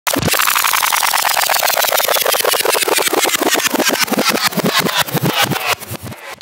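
A rapid train of clicks that slows down, under a whistle falling steadily in pitch: a wind-down sound effect.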